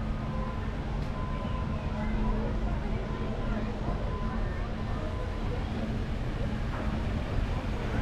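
Outdoor background of faint, indistinct voices of people nearby over a steady low hum.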